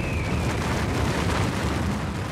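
Steady, deep rumbling roar of a blast wave from the meteorite impact, as produced for a documentary, with a faint falling whistle near the start.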